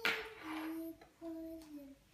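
A small child singing to herself, a few held notes stepping down in pitch, with a short sharp sound at the very start.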